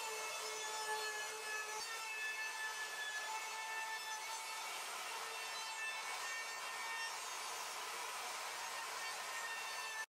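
Ryobi wood router running with a steady high-pitched whine as a Roman ogee bit cuts a decorative profile along the edge of a plywood door. The pitch wavers slightly as the bit is fed along the edge.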